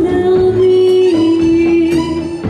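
A woman singing a boléro with live band accompaniment. She holds a long note that steps down a little about halfway through.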